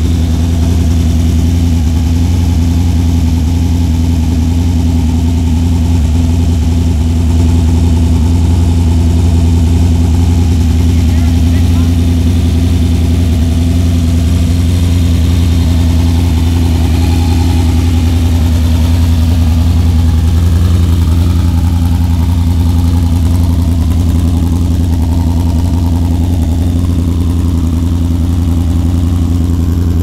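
Gaerte 166-cubic-inch four-cylinder mechanical methanol-injected midget racing engine idling steadily.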